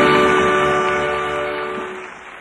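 Live backing band's final held chord at the end of the song, fading steadily away.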